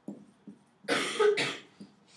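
A man coughing twice in quick succession about a second in.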